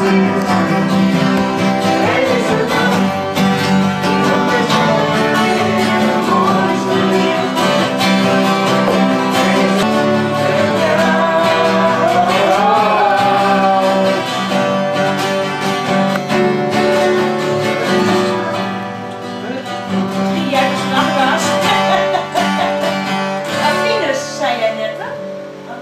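Several acoustic guitars strummed together in a group playing a song.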